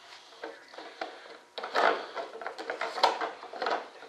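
Model airplane parts being handled and test-fitted by hand: a run of light clicks, taps and rustles that starts about one and a half seconds in.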